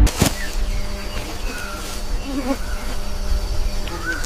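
Rainforest ambience: a steady insect drone and a low hum, with a few short bird chirps, starting right after a sharp click as the music cuts off.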